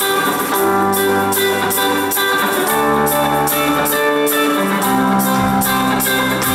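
Live band playing the instrumental opening of a song: electric guitar and electric bass holding and changing chords over a steady beat.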